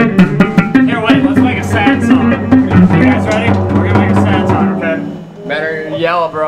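Rock band playing an amateur demo on electric guitar, bass guitar and drum kit, with regular drum hits, loud. The playing stops about five seconds in and a man starts talking.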